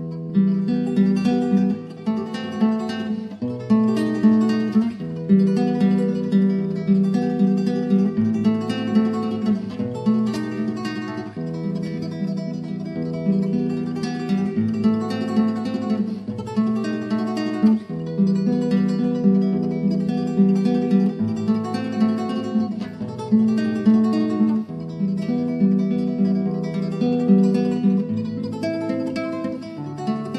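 Acoustic guitar music: a steady stream of quickly plucked notes that starts abruptly as a new piece begins.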